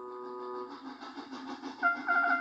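TV soundtrack played through a loudspeaker: a held musical chord cuts off under a second in, leaving a steady hissing haze as a steam engine passes on screen. Light music with short repeated notes starts near the end.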